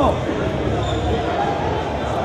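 Indistinct voices and murmur of a crowd echoing in a large sports hall, with the end of a shouted coaching call falling away at the very start.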